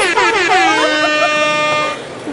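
Loud laughter from several people, their pitch sliding downward, then one long steady high-pitched note held for about a second.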